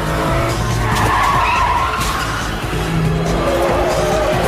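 Car-chase sound effects: car engines running hard and tyres skidding, with a smear of squeal about a second in. Film score music plays underneath.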